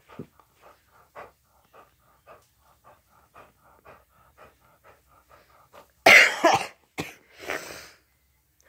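A person coughing: one loud cough about six seconds in, then a second, shorter one about a second later. Before it, faint, irregular clicking, several ticks a second.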